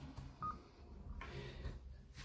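A single short electronic beep from an Icom ID-52 D-STAR handheld transceiver about half a second in, right after the operator unkeys, over a faint low hum.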